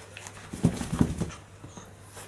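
A dog making a quick run of short low sounds, about half a second in to just past a second, as it pushes its muzzle into a plush pumpkin toy.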